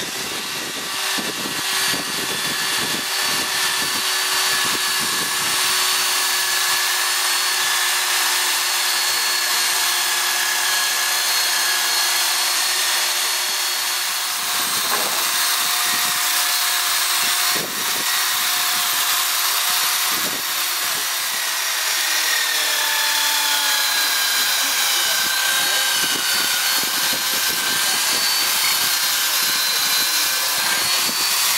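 A handheld power tool running steadily and cutting into an alileng (top shell) to open it into a horn, its whine shifting slightly in pitch as the load changes, with a gritty grinding noise over it.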